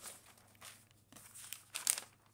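Newspaper page being turned by hand: large newsprint sheet rustling, with a soft rustle about half a second in and the loudest rustle near the end.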